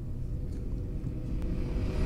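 Low, steady rumble of room tone in a large hall, with a faint hum and a few soft ticks.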